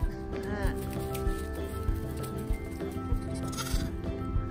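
Background music with steady held notes, and a lamb bleating once, a short wavering call, about half a second in.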